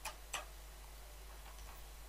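Two faint computer keyboard keystrokes, about a third of a second apart.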